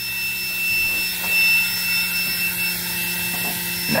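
A multimeter's continuity buzzer sounds a steady high tone, showing that the normally closed boost-cut pressure switch is still closed, over a steady hiss of compressed air leaking from the boost leak tester.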